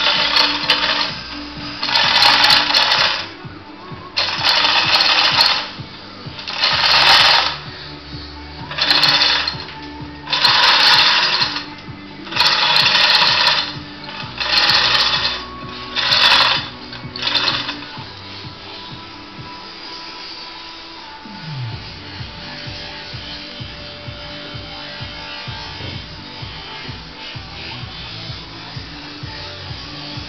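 Manual chain hoist being worked in repeated pulls: about ten bursts of chain-and-ratchet clatter, roughly one every one and a half to two seconds, which stop about 18 seconds in. The hoist is lifting a solid-iron swing keel of about 800 kg.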